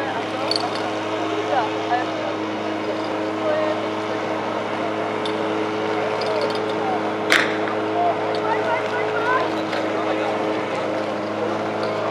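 Portable fire pump engine idling steadily over crowd chatter. A single sharp crack about seven seconds in, the start signal for the attack.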